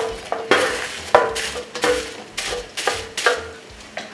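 A wooden spatula scraping chunks of grilled goat meat off a foil-lined tray into a pot of sauce, with a series of knocks and scrapes about every half second, several leaving a short ringing tone.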